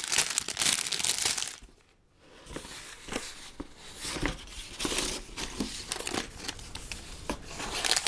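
Clear plastic LEGO parts bag crinkling as it is handled, loudest for about the first second and a half. After a short lull, lighter intermittent crackling and rustling follows.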